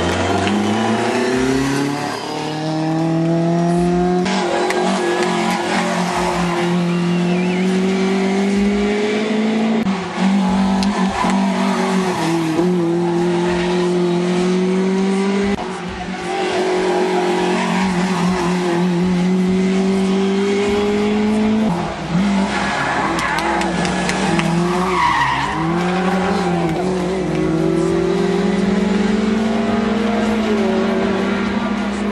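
Rally cars' engines revving hard up a twisting road, the engine note climbing and then dropping sharply at each gear change, several times over as car after car goes by.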